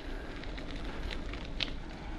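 Bicycle tyres rolling over a dirt woodland path: a steady low rumble with scattered small crackles and clicks from grit and twigs under the wheels, and some wind on the microphone.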